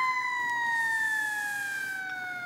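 One long, high-pitched wailing tone that slides up at the start, then sinks slowly and steadily in pitch, like a drawn-out comic cry.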